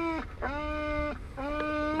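A police K-9 dog whining, with three drawn-out cries of steady pitch, each about half a second long.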